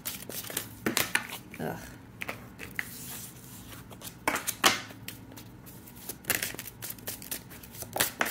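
A deck of tarot cards being shuffled by hand: a run of quick, irregular card flicks and slaps, the loudest a little past halfway through.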